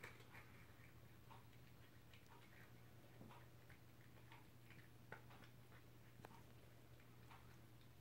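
Faint, irregular crunching of a cat chewing dry treats, heard as scattered small clicks, over a steady low hum.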